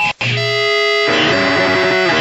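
Powerviolence punk band recording. A sudden break just after the start, then a single held, ringing chord for under a second, then the full band comes back in.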